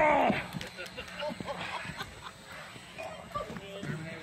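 A wrestler's loud, falling yell as he is slammed onto the ring mat, followed by scattered short shouts and grunts.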